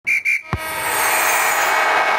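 Title-card sound effect: two short high beeps, a sharp hit about half a second in, then a sustained swooshing ring with a falling whistle.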